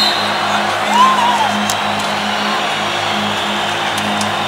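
Live band music through a stadium PA, heard from far back in the stands: a steady, pulsing low synth note under a wash of crowd noise, with a short rising-and-falling whistle about a second in.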